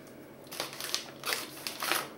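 Plastic packaging crinkling and rustling in the hands, a run of irregular crackles starting about half a second in.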